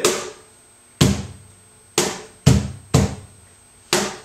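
Cajón struck by hand in a slow tientos compás: six sharp hits about a second apart, with one extra hit squeezed in between the third and fourth, each dying away quickly.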